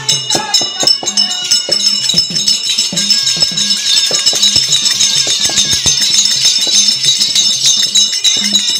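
Therukoothu folk-drama dance music: a fast run of drum strokes under a steady metallic jingling, with the performers' ankle bells shaking as they dance.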